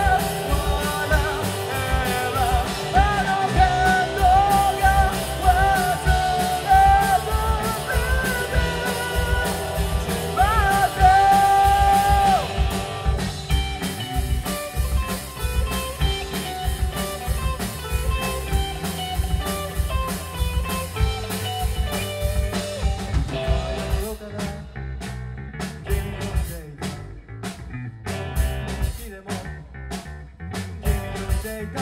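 Live rock band: a male singer holds long sung notes over a Fender electric guitar and drums for the first dozen seconds or so, then the voice stops and the band plays on without it. About two-thirds of the way in, the band drops to a quieter, sparser passage.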